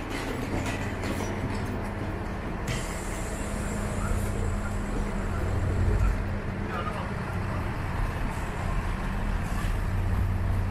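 Vehicle engine idling with a steady low hum, under a hiss that cuts off about three seconds in, with street traffic noise around it.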